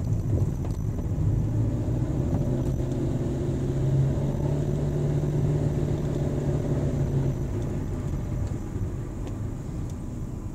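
A car driving slowly, heard from inside the cabin: steady engine hum and road rumble while climbing a rise. The hum drops away about seven seconds in.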